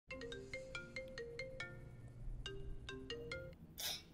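Phone ringtone of an outgoing video call: a quick tune of short chiming notes, about five a second, that stops about three and a half seconds in, followed by a brief rush of noise just before the end.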